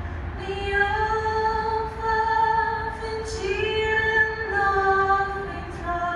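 A woman singing solo into a microphone, holding long, slightly wavering notes with no instruments audible.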